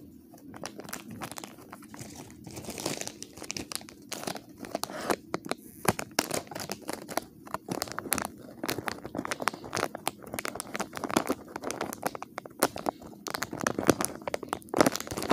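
Plastic wrapper crinkled and rustled in the hands, with dense, irregular crackles throughout.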